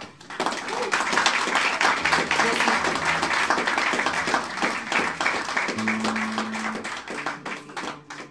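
Audience applause that bursts out suddenly after the song and thins out near the end. A few low guitar notes ring under it towards the end.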